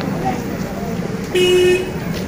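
A vehicle horn honks once, a single steady note about half a second long, a little past the middle, over background chatter.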